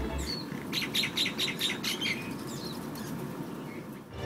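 Small birds chirping: a quick run of high chirps in the first half of the clip and a few short whistled calls, over a faint steady background hum.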